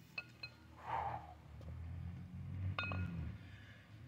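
Short metallic clinks of a 40 kg kettlebell with a small 2½ lb plate balanced on top, each clink ringing briefly at the same pitches: two close together near the start and one more near three seconds in. A short hiss comes about a second in.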